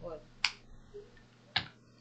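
Two short, sharp clicks about a second apart in a quiet pause, the second one fuller and reaching lower.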